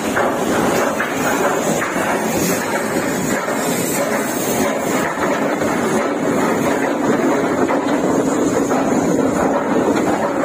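Loud, steady rumbling and grinding of a large passenger ferry's hull sliding down the slipway over its timber supports during launching.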